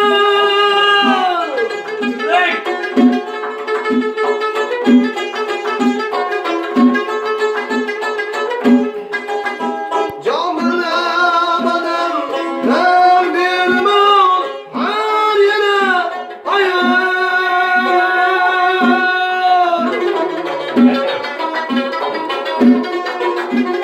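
A man singing long held notes that slide downward at the ends of phrases, accompanied by a long-necked lute plucked in a steady low beat about once a second.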